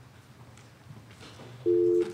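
Faint room noise with a low hum, then, near the end, a sudden loud steady electronic tone of two close pitches sounding together, like a telephone dial tone on the audio feed.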